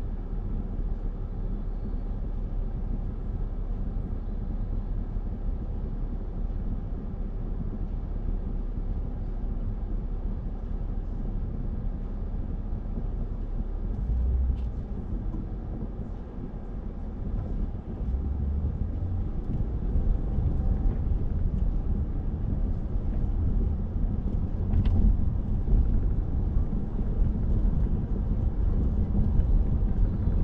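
Low, steady road rumble of a car being driven, which gets louder a little past halfway.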